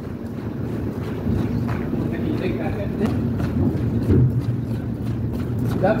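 Wind buffeting the microphone, a steady low noise, with faint voices in the background.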